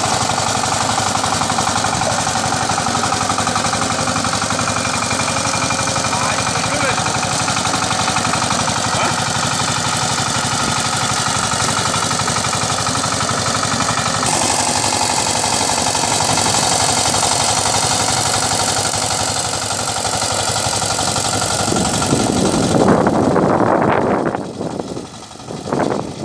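Single-cylinder diesel engine of a two-wheel power tiller running steadily under load as its rotary tiller works the soil, with a fast, even firing beat. Near the end the sound swells briefly, then falls away.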